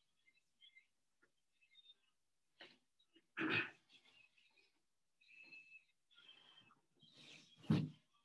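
Faint, scattered knocks and rustling of someone moving about the room, with a louder knock a few seconds in and a heavier thump just before the end.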